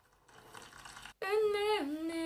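A faint hiss for about a second, then after an abrupt cut a woman hums a long held note that wavers slightly and steps down in pitch partway through.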